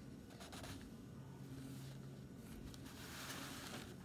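Faint rustling and scratching of hands handling objects on a table over a steady low hum.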